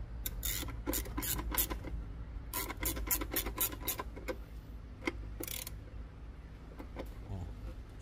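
Socket ratchet clicking in quick runs as a bolt on the intake manifold is turned, up to about five clicks a second, with a short rasp a little past the middle. A low steady hum runs underneath.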